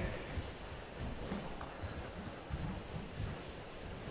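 Bare feet stepping and bouncing on foam dojo mats: soft, low thuds in an irregular rhythm.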